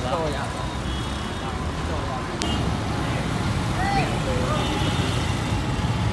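Steady road traffic noise, a low rumble of passing vehicles, with faint voices talking in the background.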